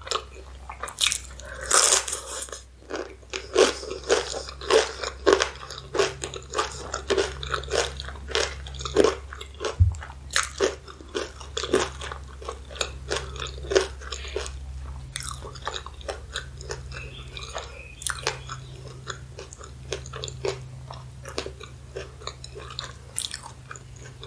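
Close-miked eating sounds: crunching a corn tortilla chip dipped in cheese sauce, with dense crackles through the first half, then softer chewing of a chili hot dog.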